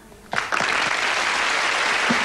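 Studio audience applauding steadily, starting about half a second in.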